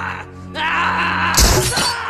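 A man screaming in agony, his cry wavering in pitch, over a steady low film-score drone, with a sudden loud crash about one and a half seconds in.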